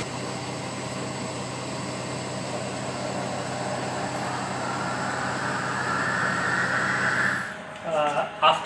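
Shaking incubator running with a steady low hum. About halfway a higher whir joins it, grows louder and rises slightly, then cuts off suddenly near the end.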